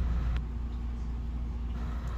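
Steady low background hum, with one faint click about half a second in.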